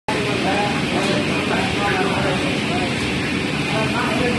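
Steady machinery drone of a steam-operated mawa (khoa) kettle at work, its motor-driven scraper arms stirring and scraping the reducing milk around the steam-heated pan.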